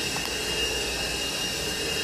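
Steady machine noise: an even hiss with a constant high-pitched whine and a lower hum, unchanging throughout.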